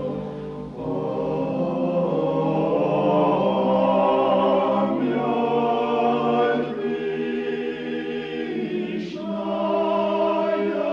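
Background music: a choir singing slow, held chords that change every few seconds.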